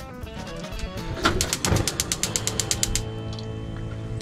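Gas hob's spark igniter clicking rapidly, about nine clicks a second for under two seconds, starting about a second in, as the burner under the saucepan is lit.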